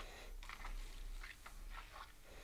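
Faint wet mouth sounds: a few soft smacks and clicks of lips and tongue while a sip of whisky is savoured, over a low steady hum.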